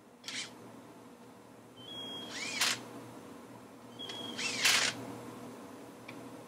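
Cordless drill/driver run in two short bursts about two seconds apart, each a brief motor whine ending in a sharp whirring burst, after a small click just after the start.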